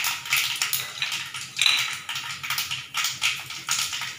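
Dried red chillies and cloves frying in hot oil in a wok, sizzling with a dense crackle of tiny pops that swells and eases unevenly: the spice tempering (vaghar) at the start of cooking.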